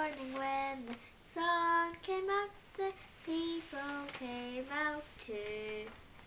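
A young girl singing unaccompanied, in short phrases with held notes and brief pauses between them.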